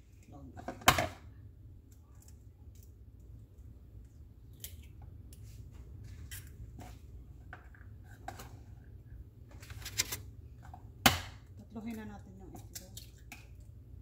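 Eggs being knocked and cracked open into a plastic container: sharp knocks about a second in and again near the end, with smaller taps and shell-handling clicks between.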